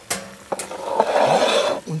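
A baking dish being pushed into an oven, scraping across the oven floor for about a second and a half, with a couple of sharp knocks as it is set down.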